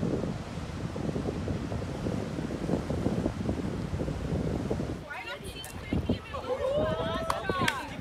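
Wind buffeting the microphone with a low rumble for the first five seconds. Then people's voices talk over it near the end.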